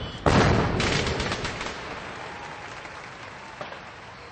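Fireworks: one loud bang about a quarter second in, then a quick run of crackles that fades away over the next couple of seconds.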